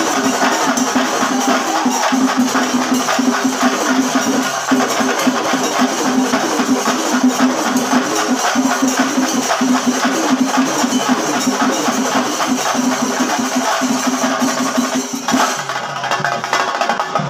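Singari melam: chenda drums beaten in a fast, dense rhythm with cymbals, loud and continuous, and a wavering melodic line running over the drumming.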